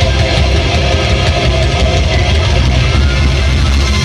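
A heavy metal band playing live at full volume: distorted electric guitars, bass and drums, recorded from the crowd with a dense, booming low end.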